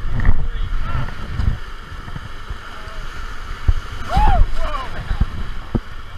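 Whitewater rushing and splashing around an inflatable raft running a rapid, with wind buffeting the microphone. A person yells once about four seconds in, and a few short knocks come near the end.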